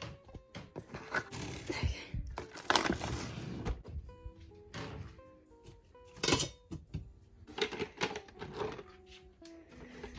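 Background music playing under the knocks and clatter of art supplies being picked up and put away, several sharp knocks, the loudest about three seconds in and another just past six seconds.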